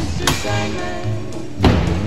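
Background music, with two sharp knocks of a freestyle scooter hitting a skatepark mini ramp; the second, near the end, is the louder.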